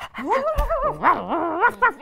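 A person imitating a small dog, a run of playful yips and whines with the pitch wavering up and down.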